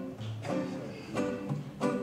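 Acoustic guitar accompaniment: three chords played in turn, each ringing and fading before the next.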